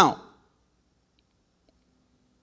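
A man's amplified voice trails off at the very start, then near silence with a couple of faint clicks.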